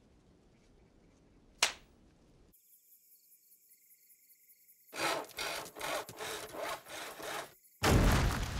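A single sharp swish, then quiet with faint high chirping, then a run of rasping, scraping strokes, about three a second, for some two and a half seconds.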